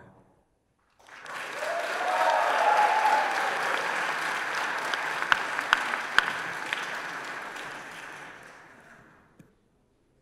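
Audience applauding: the clapping starts about a second in, swells quickly, then slowly fades away before the end, with a few single loud claps standing out in the middle.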